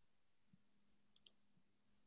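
Near silence: faint room tone with a low steady hum and two faint clicks, about half a second in and just after a second in.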